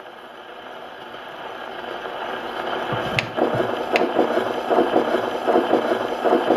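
A shellac 78 rpm record still turning under the needle of a Columbia Vivatonal Grafonola acoustic gramophone after the music has ended: the needle runs in the run-out groove with surface hiss. Two sharp clicks come about three and four seconds in, followed by a fast rhythmic mechanical rattle that grows louder.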